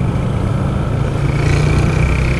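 Honda CG single-cylinder motorcycle engine running at low road speed, with a steady rumble and wind noise on the helmet microphone.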